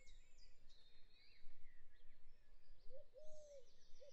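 Faint birdsong: several birds chirping in short rising and falling calls, with a lower, slightly louder arched call about three seconds in.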